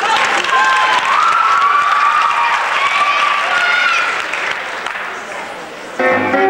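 Audience applauding, with shouting voices over the clapping; it dies down near the end.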